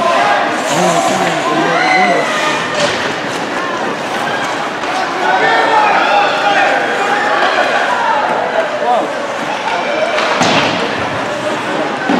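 Ice hockey game in a large rink: several sharp impacts against the boards, the loudest one about ten seconds in with a ringing echo, among voices of players and spectators.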